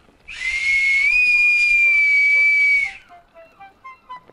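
One long blast on a small brass whistle: a single high, steady tone that rises slightly about a second in and holds for under three seconds before stopping. Faint music notes follow near the end.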